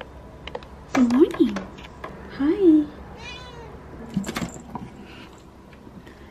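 Tabby cat meowing twice, with calls that rise and fall, followed by a brief high squeak and a few sharp clicks.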